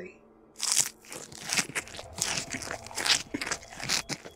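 Chewing sound effect: a mouth eating loudly and greedily, with a run of irregular wet crunches starting about half a second in.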